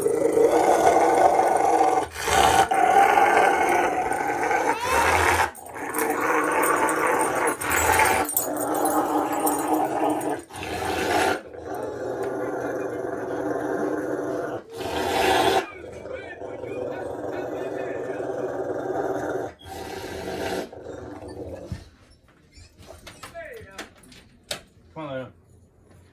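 Rottweiler growling in long, drawn-out growls while being rubbed dry with a towel, with short breaks between them, dying away in the last few seconds. The growling sounds dramatic, but the dog enjoys being dried off.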